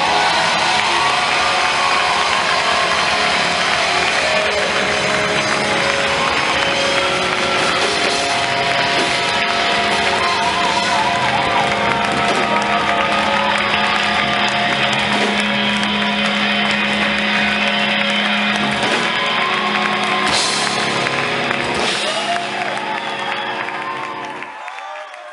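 A rock band playing live in a club: electric guitar, bass and drums, loud, with a low note held for several seconds in the middle. The music fades out near the end.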